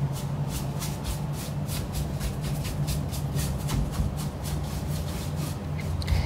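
Bristle brush sweeping dust off the top panel and connector field of a Peavey RQ2310 mixing console, in quick, even, repeated strokes of about four a second.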